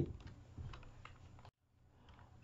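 A few faint computer-keyboard clicks over low room noise, then dead silence from about a second and a half in.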